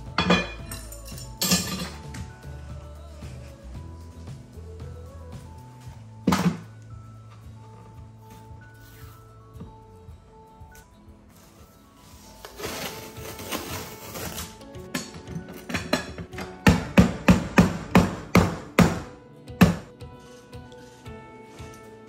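Background music over workbench sounds: a few single knocks, then painter's tape being peeled off a butcher-block countertop. After that comes a quick run of about a dozen sharp knocks, from a hammer tapping an aluminium T-track down into its routed groove.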